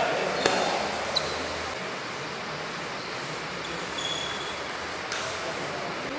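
Table tennis ball strikes: two sharp clicks about two-thirds of a second apart near the start, and another about five seconds in, over steady hall noise and faint voices.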